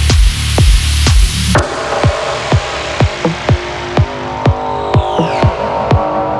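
Minimal techno with a steady four-on-the-floor kick drum about twice a second. A little over a second and a half in, the heavy bass and high hiss drop out, leaving the kick under held synth tones, with a falling synth sweep near the end.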